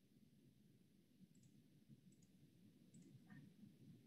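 Near silence: faint room tone with a few faint, scattered clicks.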